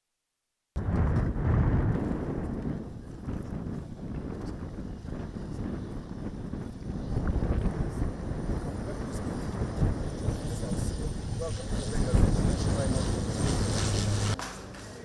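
A light propeller aircraft flying low overhead, its engine noise mixed with heavy wind rumble on the microphone; it cuts in abruptly about a second in, and a steady high whine joins in the second half.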